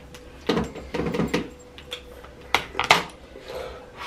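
Small hard objects clicking and clinking, like grooming tools and containers handled on a bathroom counter: a cluster of sharp clicks in the first second and a half, and two more near three seconds in.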